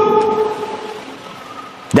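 A man's voice trailing off: the held last syllable leaves a steady tone that fades away over about a second and a half into faint room noise, and his speech starts again right at the end.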